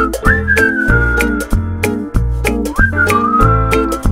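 A whistled melody over a song's backing of bass and percussion with a steady beat. It comes in two phrases, each swooping up into a long note that slowly drifts down in pitch.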